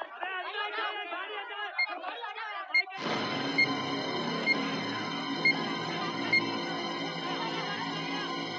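Tense film score with an electronic beep about once a second, the countdown timer of a time bomb. For the first three seconds overlapping crowd voices are mixed in, then the music swells abruptly into a sustained, suspenseful chord.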